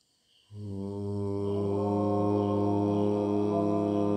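A deep, sustained chanted Om begins suddenly about half a second in and is held on one steady low pitch.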